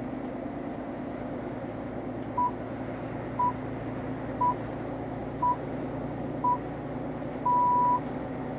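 BBC Greenwich Time Signal pips on the radio: five short, even beeps a second apart, then a longer sixth beep that marks the top of the hour. Underneath is the steady hum of the moving car.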